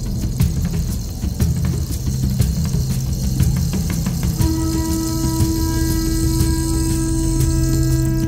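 Background music; about four and a half seconds in, a long held note joins the low backing.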